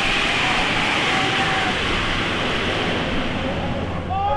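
A steady rushing noise, even and unbroken, with faint distant voices now and then.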